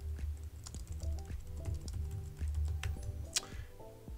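Typing on a computer keyboard: a run of quick, irregular keystrokes, one sharper click near the end, over background music.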